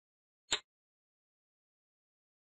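A single short, sharp click about half a second in: a click sound effect from the lesson software as an answer is entered in an on-screen subtraction table.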